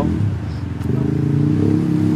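A vehicle engine running steadily, an even low hum that holds one pitch.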